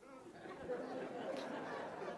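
Faint, indistinct chatter of congregation voices, with no single voice standing out, rising just after the start.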